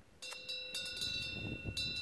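Metal wind chime ringing, struck about three times with its clear tones lingering between strikes.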